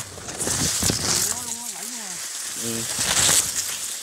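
Blades of tall grass rustling and brushing against the phone as it is pushed through the grass, a steady hissing swish with a few sharper crackles about a second in.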